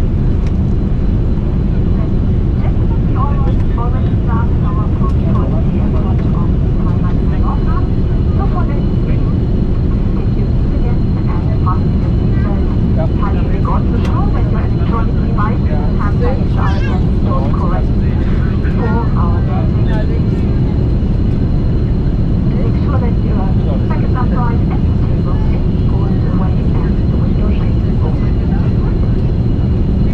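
Steady low roar of cabin noise inside a Boeing 747-400 in flight, with a faint high steady whine over it. Indistinct passenger chatter is heard under the noise.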